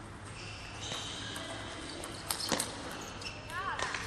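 A celluloid-type table tennis ball bouncing a few times with sharp clicks, a cluster of them a little past the middle, followed near the end by short squeaks of shoes on the court floor, in a large hall.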